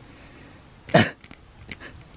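A man's single short, sharp 'oh' about a second in, followed by a few faint clicks and scrapes of fingers rubbing soil off a broken metal bell fragment.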